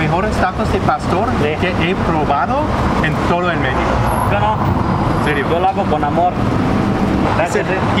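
Mostly speech: a man talking in Spanish, over steady street traffic noise.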